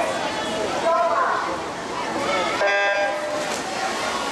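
Swimming start signal: a single electronic horn beep, a steady tone of about half a second, sounding a little under three seconds in to start a backstroke race. Voices of people around the pool are heard before and after it.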